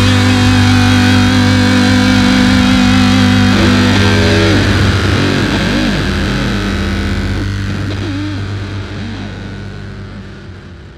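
Final distorted electric-guitar chord of a rock song, with bass underneath, held for about four seconds, then wavering in pitch as it slowly fades out.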